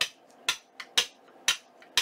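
Ink pad patted repeatedly onto a large rubber background stamp resting on a glass craft mat: sharp, even knocks about two a second.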